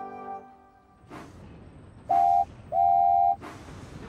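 Animated steam locomotive's whistle blowing twice at one pitch, a short toot then a longer one, with puffs of steam hiss before and after. A held closing music chord fades out in the first second.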